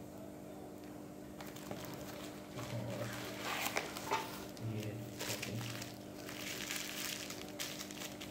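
Bubble wrap and a cardboard box rustling and crinkling as a wrapped jar is lifted out and handled, in irregular bursts starting about a second and a half in.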